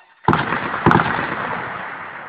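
A loud blast from shelling goes off about a quarter second in, with a second sharp crack just under a second in. Its rumble then rolls on and slowly fades.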